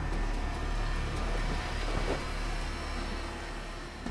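A low, steady drone, easing slightly toward the end.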